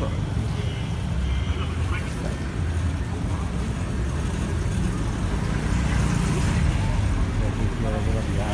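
Open-air night-market background: a steady low rumble with faint voices of people nearby.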